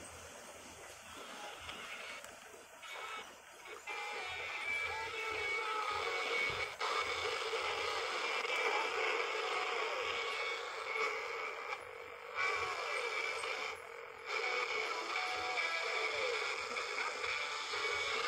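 Small Precison PS-683 pocket AM/FM radio playing a music broadcast through its tiny speaker. The sound is thin and lacks bass, and it dips briefly a few times.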